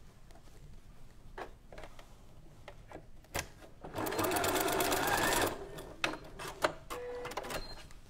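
Janome sewing machine stitching a short run of long straight stitches as a trial seam, a rapid even ticking that lasts about a second and a half midway. Small clicks of handling come before and after it.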